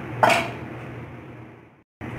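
A single short clink of a utensil against a dish, followed by a steady low hum that fades and cuts off abruptly near the end.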